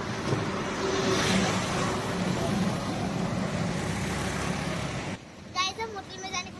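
Roadside highway traffic: passing vehicles make a steady rushing noise with a low hum, loudest about a second in. It cuts off abruptly about five seconds in, and a child's voice follows.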